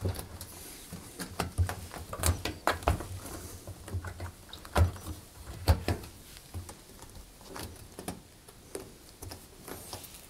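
Rubber door seal of a front-loading washing machine being pressed and worked by hand onto the front panel's lip: irregular soft knocks, rubs and small clicks of rubber and fingers against the metal cabinet.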